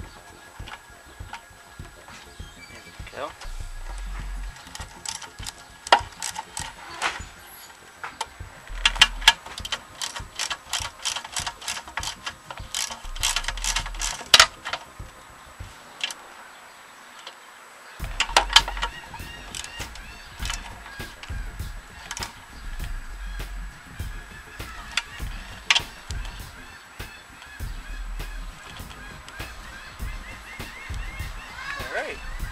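Socket ratchet clicking in short, irregular runs of sharp clicks as the bolts holding a new gas tank are tightened on a Briggs & Stratton push-mower engine.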